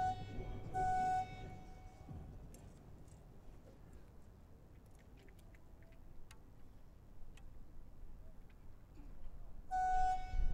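Archery range signal horn: two short, steady blasts at the start calling the archers to the shooting line, then a single blast about ten seconds later signalling the start of shooting for the shoot-off arrow. Between the blasts there is a low background with a few faint clicks.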